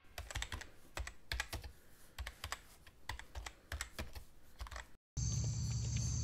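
Typing on a laptop keyboard: irregular keystroke clicks, a few a second, for about five seconds. After a brief silent gap, a steady chirring of night insects begins.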